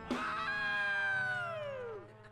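A single long note from the live band, held after the drums and guitars fall silent, then sliding steadily down in pitch until it breaks off at the end.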